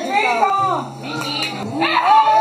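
Excited voices calling out while a small dog whimpers, let in through a door and running in across a tiled floor.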